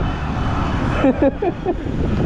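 Road traffic noise: a vehicle passing over a steady low rumble, with the noise strongest in the first second. A short burst of a person's voice comes about a second in.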